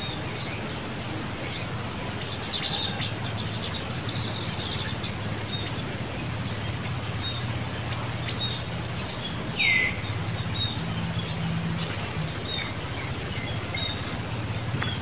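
Outdoor ambience of small birds chirping in short repeated notes over a low steady hum. A little under ten seconds in comes one louder, brief call that falls in pitch.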